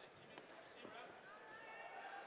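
Near silence: faint ring-side sound with a distant voice calling out in the second half and a light knock about half a second in.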